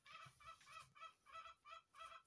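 Faint clucking of chickens, a short repeated note about four times a second, under near silence.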